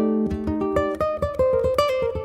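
Ko'olau CE custom electric tenor ukulele with a quilted maple top, fingerpicked: a quick run of single plucked notes, several a second, ringing into each other.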